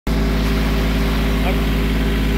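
Compact tractor engine running at a steady pitch, heard from the operator's seat.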